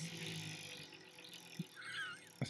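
Tabletop prize wheel spinning fast, its pointer clicking rapidly against the pegs in a ratcheting rattle that fades as the wheel runs on.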